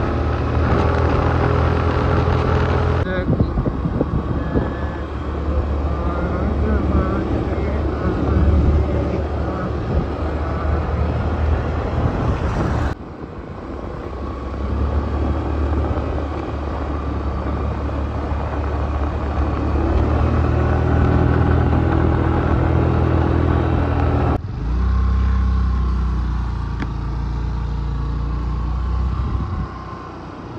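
A motorcycle engine running steadily as it is ridden along a road, with wind and road noise. The sound changes abruptly three times, about three, thirteen and twenty-four seconds in.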